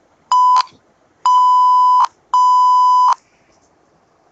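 Morse code tones: a steady, high electronic beep keyed as one short tone followed by two long ones (dot, dash, dash), sent as part of a Morse code listening quiz.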